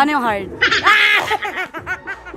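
A woman laughing: a loud, high-pitched squeal a little over half a second in, then a run of short laughs.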